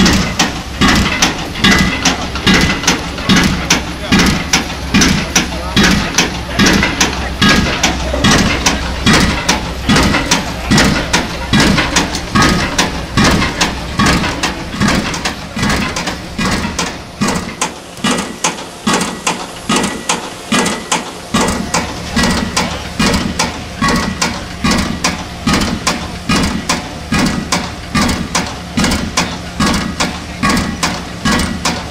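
Crawler-mounted pile driver's hammer striking a foundation pile in a steady rhythm of about two blows a second, over the low hum of the rig's engine.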